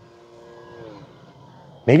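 Faint steady whine from the electric motor and propeller of an FMS Piper J-3 Cub 1.4 m RC plane in flight, dropping slightly in pitch about a second in.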